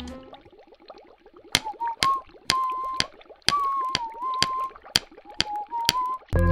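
Cartoon sound effects: sharp pings about twice a second, starting about a second and a half in, with a wavering whistle-like tone between them, over faint bubbling.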